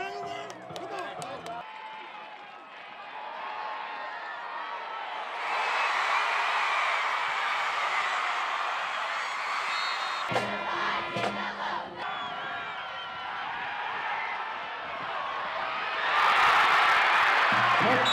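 Football stadium crowd cheering, swelling about five seconds in and again near the end.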